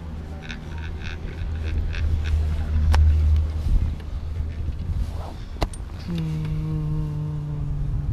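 Detachable chairlift carrying its chair through a tower's sheave train: a quick run of rhythmic clacks over a low rumble, then two sharp clicks. For the last two seconds a steady low-pitched hum is held, bending in pitch as it ends.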